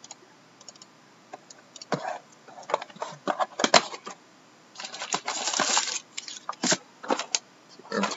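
Cardboard trading-card box being opened and handled: scattered clicks and taps, then a dense scraping rustle of cardboard about five seconds in as the inner box is pulled out.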